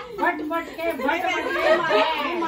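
Several women's voices chattering over one another, with laughter.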